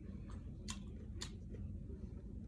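Mouth biting into and chewing an Asian chicken wrap in a green tortilla, with three short crisp clicks in the first second and a half.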